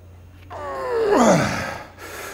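A man's strained groan, falling steeply in pitch, starting about half a second in and lasting over a second: the effort of pushing a barbell good morning up from the bottom of the rep.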